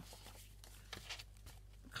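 Faint handling of stiff card pages being pulled apart, a few soft clicks and rustles, over a low steady hum.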